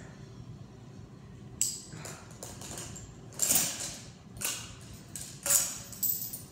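Metal chain of a weighted dip belt rattling and clinking in several short bursts as it is unhooked from an iron weight plate, the loudest burst near the end.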